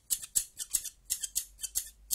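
Scissors snipping over and over in quick succession, about four sharp cuts a second: a cutting sound effect.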